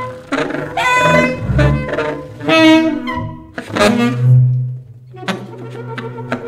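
Contemporary jazz ensemble playing live: short saxophone and bowed string phrases with rising glides, a held low note about four seconds in, then quick percussive taps over sustained tones near the end.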